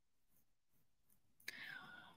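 Near silence, with a faint breathy, whisper-like voice sound about one and a half seconds in.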